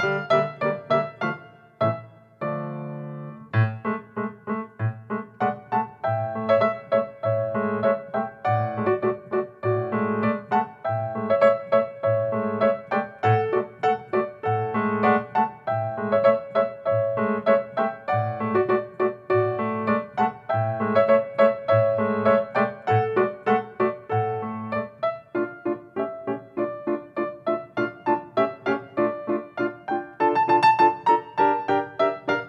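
Piano playing a lively period piece: a regular bass beat about twice a second under chords and a melody, with a briefly held chord about two seconds in.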